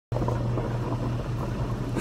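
Steady low hum with an even background noise inside a car's cabin.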